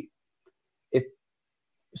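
A single short vocal sound from a man, one brief syllable about a second in, between stretches of dead silence.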